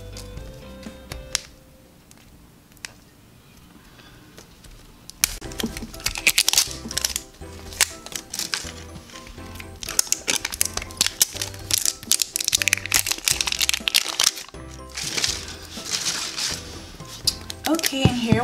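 Plastic wrap being peeled and crinkled off an L.O.L. Surprise ball, in fast crackling runs from about five seconds in, over background music with a steady beat.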